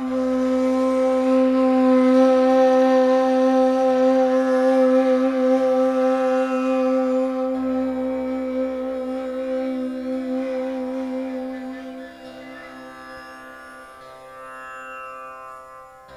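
Persian ney holding one long note over a steady tanpura drone; the ney note swells at first, then fades away about twelve seconds in, leaving the tanpura drone alone and quieter.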